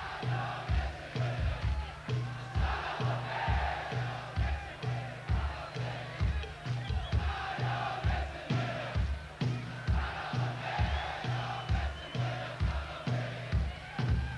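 Rock band's drums and bass keeping a steady beat, about two strokes a second, while a large crowd sings and chants along.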